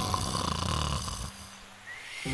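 Cartoon snoring sound effect for a sleeping wolf: a loud, rattling snore that fades out about a second and a half in, followed near the end by a thin, high whistle.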